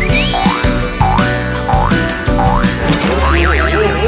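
Background music with comic cartoon sound effects: a run of rising boing-like swoops in pitch, about one every half second, then a wobbling warble over a deep bass near the end.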